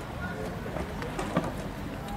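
Background voices talking indistinctly, with one short sharp click about one and a half seconds in.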